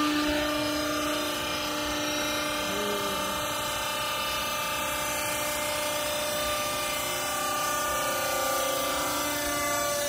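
Hydraulic power unit of a vertical baler running: electric motor and pump giving a steady hum with a constant whine.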